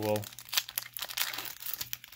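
Foil Pokémon booster pack wrapper crinkling in the hands and being torn open along its top edge, a dense run of sharp crackles.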